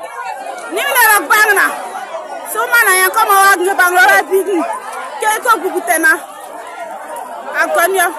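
Several people's voices, loud and excited, talking and calling out over one another in bursts, with a quieter stretch about five seconds in.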